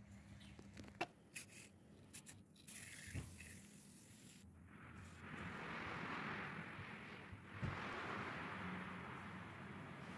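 Faint handling of hydraulic lash adjusters (tappets) in gloved hands, giving a few light metal clicks in the first half. A faint steady hiss takes over in the second half.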